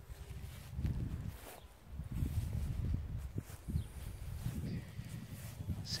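Footsteps through long grass with wind buffeting the microphone: an uneven low rumble with soft thuds.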